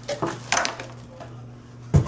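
Hard plastic parts of an electric food chopper knocking and clattering as they are handled on a table, with a sharper, louder knock near the end.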